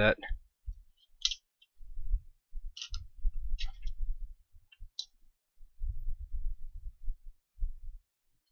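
Handling noise as a circuit board is turned over and repositioned: a handful of sharp small clicks scattered through the first five seconds, among irregular dull low bumps.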